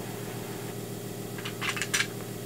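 A steady low hum throughout, with a few quick light clicks near the end as a pistol is handled.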